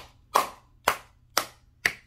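A palm slapping a Redmi Note 11 smartphone held in the other hand: five sharp smacks about half a second apart. The slapping is a home attempt to make the phone's black screen come back on.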